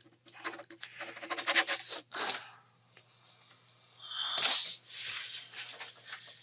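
Rustling and scratching of paper handled at a desk, in quick crackly bursts for about two seconds. After a short pause comes one louder rush of noise about four and a half seconds in.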